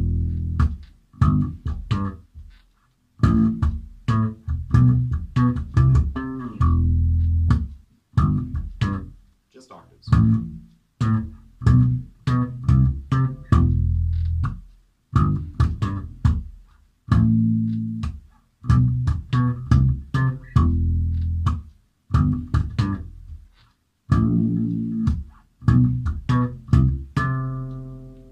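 Electric bass guitar playing a short lick of plucked notes built on octaves along the strings, repeated in phrases with brief pauses between them.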